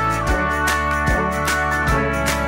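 Background music with a steady beat and held instrumental notes.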